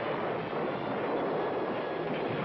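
A steady, dense rumble of battle noise, with no separate shots standing out.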